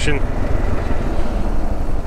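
Motorcycle engine running steadily under way, mixed with wind rush on the microphone: a continuous low rumble with no separate events.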